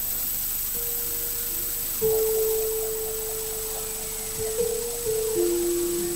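Javanese gamelan music: a slow line of long held notes that steps down in pitch over the last seconds.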